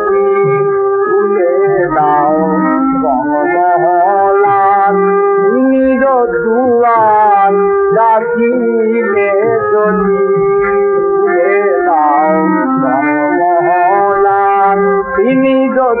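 Music from a 1928 gramophone recording of a Bengali ghazal: a wavering melody line over a steady held drone note. The sound is thin and narrow, with no top end, typical of an early disc recording.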